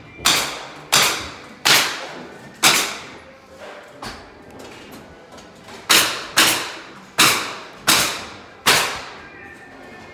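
Sharp construction strikes in a house being drywalled. Two runs of about five blows each, spaced under a second apart, with a pause of about three seconds between the runs; each blow rings out briefly in the bare rooms.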